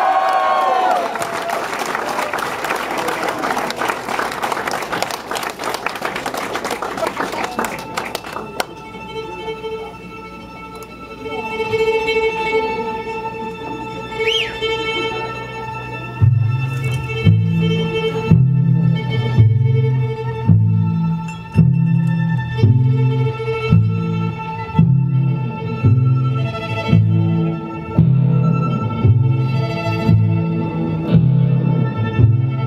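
Audience applause for the first several seconds. Then the band eases into the song with long-held violin tones and guitar. From about halfway through, low notes pulse roughly once a second.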